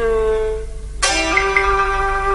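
Instrumental accompaniment of a Cantonese opera song: one note rings and fades away, then about a second in a new note starts sharply and is held steady.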